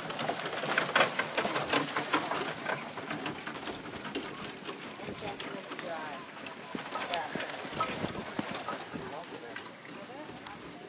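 Hoofbeats of a single horse trotting in harness on the arena footing, with its carriage's wheels rolling along behind, loudest at first and growing fainter as it moves off down the rail.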